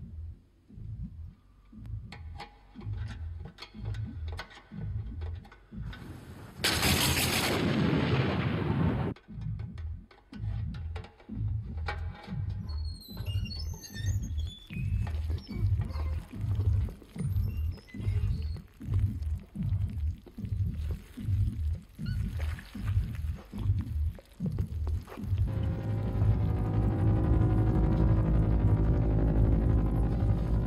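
Suspense film score: a low pulsing beat, about three beats every two seconds, with a loud hissing burst a few seconds in and a sustained droning chord swelling in near the end.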